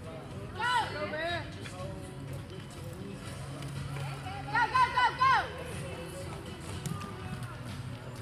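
Onlookers shouting short, high-pitched cheers of encouragement at a barrel-racing horse: a couple of calls about a second in, then a rapid run of four near the middle, over a steady low hum of the arena.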